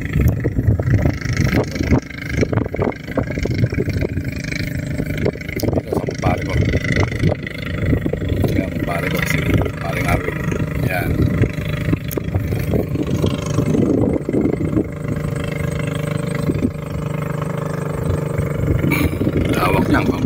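A boat engine running at a steady speed.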